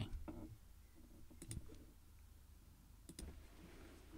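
Computer mouse clicking: a quick pair of clicks about a second and a half in, and another quick pair near the end, over a faint low hum.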